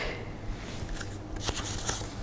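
Faint handling of paper note cards: light rustling with a few small clicks, over a steady low hum in the room.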